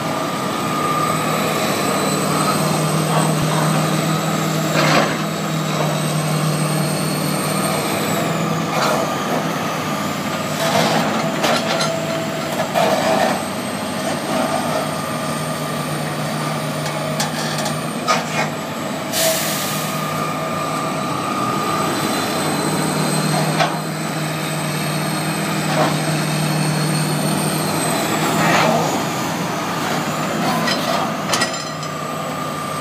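Hitachi ZX330LC hydraulic excavator working: its diesel engine runs steadily while the hydraulics whine, the pitch dipping and rising as the boom and bucket move under load, with scattered knocks from the bucket and soil. A brief hiss comes a little past halfway.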